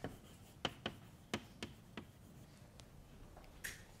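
Chalk on a blackboard: a string of short, sharp taps and brief scratches as a label and arrow are written. The taps come close together in the first two seconds, then thin out.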